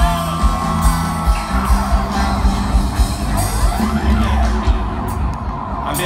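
Live reggae band playing, with steady bass notes and a regular drum beat, and whoops from the crowd.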